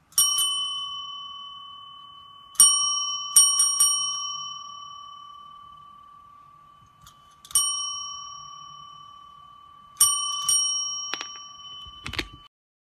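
Chrome desk service bell rung by a cat's paw: single dings and quick runs of three or four, each ringing out with a long, slow decay.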